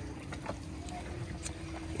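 Soft steady background hum with a faint steady tone, and two light clicks about a second apart as the hinged plastic cover of a boat's deck shower outlet is flipped open.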